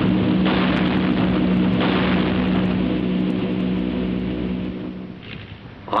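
Field guns firing: sharp reports about half a second and two seconds in, each trailing into a long rumbling wash, over a steady hum of held tones that fades out about five seconds in.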